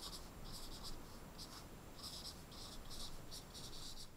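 Dry-erase marker writing on a small whiteboard: a faint, quick run of short, high-pitched strokes as the letters are formed.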